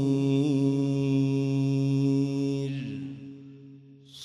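A male Quran reciter holds the long, steady final note of his recitation (tilawa) with a slight waver. The note stops after nearly three seconds and dies away in the mosque's reverberation.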